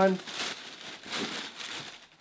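White tissue paper rustling and crinkling as it is pulled back and crumpled inside a shoebox.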